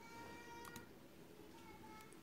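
Near silence: room tone, with a faint high call held on one steady pitch for most of the first second and again briefly near the end.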